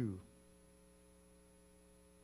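Low-level steady electrical mains hum, a few constant low tones with nothing else over them; a man's spoken word trails off at the very start.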